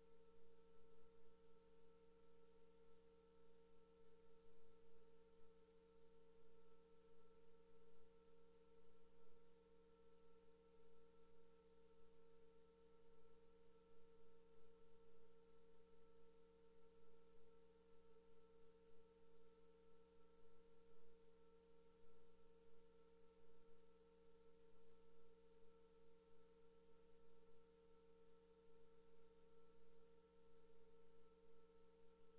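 Near silence, holding only a faint steady hum made of several fixed tones, one a little above the others in pitch, with no change throughout.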